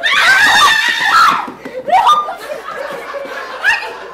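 People laughing loudly in high-pitched voices, strongest for the first second and a half, then a shorter burst about two seconds in and a brief one near the end.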